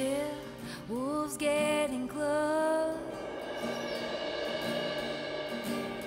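Alt-country band music from a line-up of guitars, pedal steel, fiddle, bass and drums: a passage without words, with melody notes that slide in pitch in the first half, then a steadier held sound.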